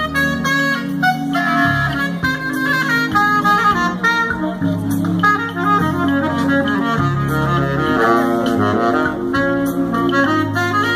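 Saxophone playing a jazzy melody over a backing track with a steady bass line.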